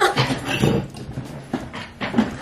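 A woman laughing and squealing in short, breathy bursts, a reaction to a freezing-cold chair.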